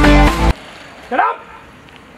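Background music cuts off abruptly about half a second in, followed by a single short crow caw about a second in.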